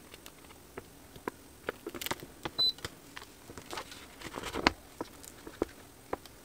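A printed heat-transfer sheet being handled and its paper backing peeled off: scattered crackles and rustles of stiff paper. A short high beep sounds about two and a half seconds in.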